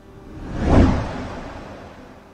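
Whoosh transition sound effect between news stories: a single noisy swell that builds to a peak just under a second in, then fades away.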